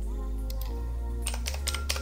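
Computer keyboard keys clicking as digits are typed: a couple of keystrokes about half a second in, then a quick run of several in the second half. Background music with steady held notes plays underneath.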